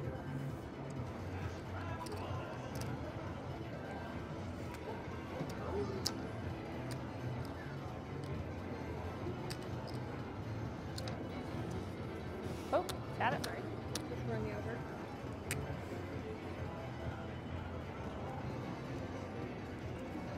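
Casino table ambience: background music and a murmur of distant voices, with a few sharp clicks as casino chips and playing cards are handled at the table.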